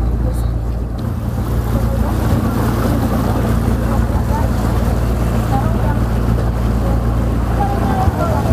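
A ferry's engine running with a steady low drone, over the rushing, churning water of the propeller wash behind the stern.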